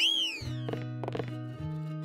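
Cartoon background music with plucked notes, opened by a whistle-like sound effect that rises and then falls in pitch in the first half second.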